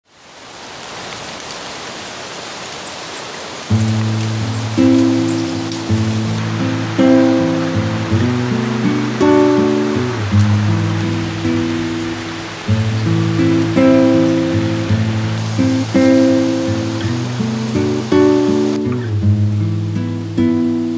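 A steady hiss fades in, then acoustic guitar music starts about four seconds in: plucked and strummed notes that play on steadily.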